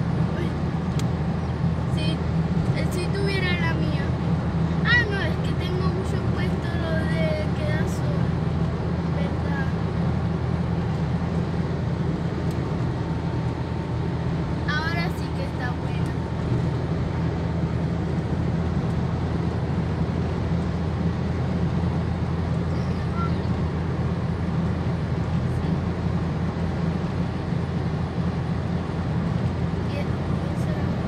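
Steady in-cabin drone of a car travelling at road speed: a low, even rumble of engine and tyres heard from inside the car.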